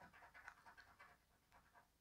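Faint scraping of a coin edge over a scratch-off lottery ticket's coating, a quick run of short strokes that dies away within the first half second, then near silence.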